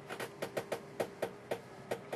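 Watercolour brush dabbing and stroking on paper, a quick, uneven run of about a dozen light taps, over a faint steady hum.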